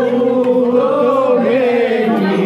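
A group of men's voices singing together without instruments, a slow, drawn-out melody held over a steady low note.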